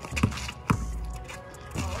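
A basketball dribbled on an asphalt driveway, three sharp bounces less than a second apart and then one more near the end, over background music with a steady bass.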